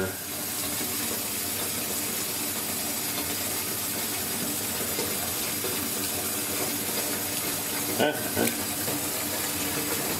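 Steady rush of running water in a bathtub where two rats are swimming.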